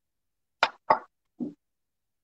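Three short, sudden sounds a little over half a second in: two sharp pops close together, then a softer, lower one.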